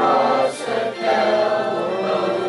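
A congregation singing a hymn together in held notes, with a short break and a new phrase starting about a second in.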